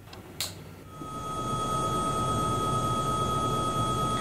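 A switch clicks once about half a second in. From about a second in, a steady electric hum with a high, even whine runs on.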